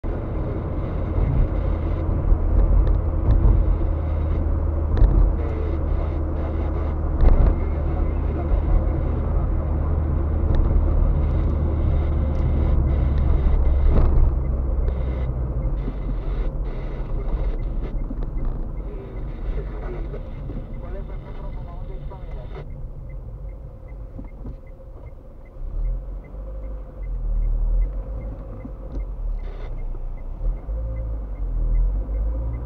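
Road and engine noise heard inside a car's cabin while driving: a steady low rumble for the first half, then quieter as the car slows in traffic. A faint regular ticking runs through the last several seconds.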